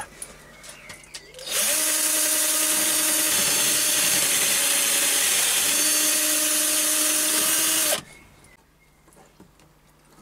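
Metal lathe running while a twist drill in a drill chuck bores the hole for a 6 mm tapped thread in the end of the mandrel blank: a steady whine over a loud hiss that starts about a second and a half in and stops suddenly about two seconds before the end.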